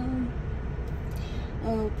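Steady low road and drivetrain hum heard inside a car's cabin while it creeps through slow traffic, with a woman's voice trailing off at the start and starting again near the end.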